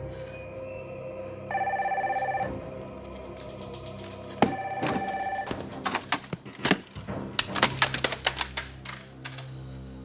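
A telephone ringing twice, each ring about a second long, with a pause of about two seconds between them. In the last few seconds comes a run of irregular sharp clicks and knocks.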